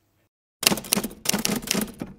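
Typing sound effect: rapid key clicks in short runs, starting just over half a second in, laid under on-screen text being typed out letter by letter.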